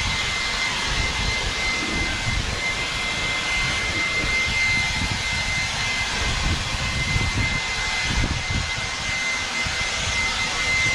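Snapfresh 20V cordless electric leaf blower running steadily, a high motor whine over the rush of air, while blowing out debris.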